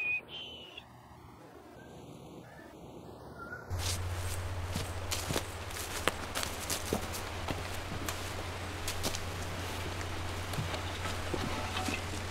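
A whistled note in the first second, then a few seconds of quiet. About four seconds in, the sound cuts to a steady low hum with irregular crackles and rustles of footsteps on dry leaf litter.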